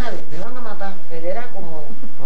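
An older woman's voice singing unaccompanied, in a melody with short breaks between phrases.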